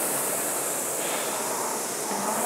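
Concept2 indoor rower's air-resistance flywheel whooshing as it spins, fading slightly as the fan coasts through the recovery between strokes.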